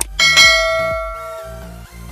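A single bell-ding sound effect, struck once and ringing out as it fades over about a second and a half, of the kind used with an on-screen subscribe-and-bell reminder. It plays over electronic dance music with a steady low beat.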